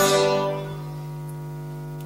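Waldorf Blofeld synthesizer's atmospheric preset 'SunOfTheDogs WMF' sounding a sustained, many-toned note that fades away over the first half second or so. Under it a steady low mains hum runs on through the speaker system, which the owner suspects comes from poorly shielded connecting leads.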